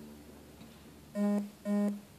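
String chamber orchestra: a soft held chord fades away, then two short, loud accented notes sound on the same low pitch, about half a second apart.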